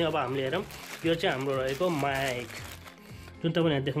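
Mostly a man speaking, with light crinkling of the clear plastic sleeve around a condenser microphone as it is lifted out of its box.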